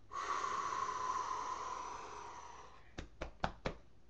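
A person's long, breathy exhale that fades out over about two and a half seconds, the kind of gasp that follows chugging a beer. Then come four quick knocks in under a second.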